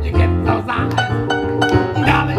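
Live acoustic jazz combo playing: upright double bass plucked under acoustic guitar and keyboard.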